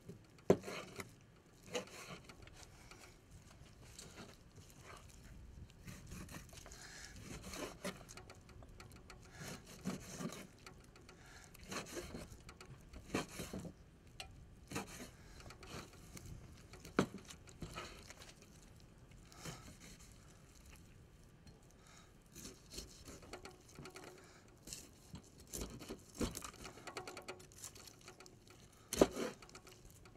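A knife cutting raw pork riblets on a wooden cutting board: irregular knocks and scrapes as the blade strikes and drags across the board, with brief pauses between cuts.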